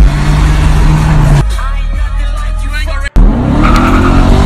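Car cabin sound with heavy, bass-laden music and a low engine and road rumble. The sound cuts out for an instant about three seconds in, then a car engine revs up, rising in pitch.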